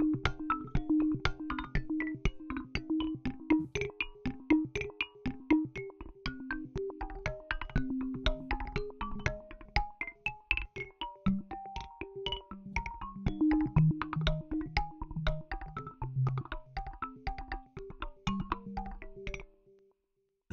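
Omnisphere's 'Intimate Bouncing Mallets' sequenced synth-mallet pattern played through the Soundtoys PhaseMistress phaser on a rhythmic groove preset: a fast run of short bouncing mallet notes stepping up and down in pitch, coloured by the phasing. It stops just before the end.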